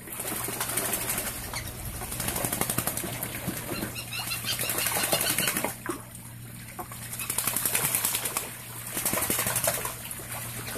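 Ducks bathing, beating their wings on the water and splashing in rapid bursts. The splashing pauses about six seconds in and again briefly near the end.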